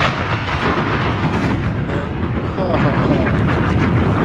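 Loud, crackling, rumbling noise like a gunfire or explosion sound effect, with a faint voice underneath.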